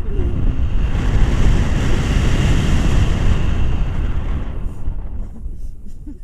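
Wind rushing over the camera microphone of a paraglider in flight. The loud, rumbling rush builds over the first second and eases off about five seconds in.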